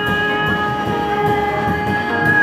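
A harmonica holding one steady chord over the band's drums and upright bass.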